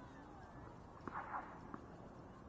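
Faint outdoor hard-court ambience with two light knocks about 0.7 s apart, typical of a tennis ball being bounced on the court before a serve, and a brief higher-pitched sound between them.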